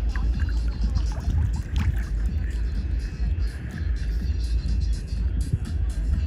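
Low, uneven rumble of buffeting on the microphone held just above choppy sea water, with faint music behind it.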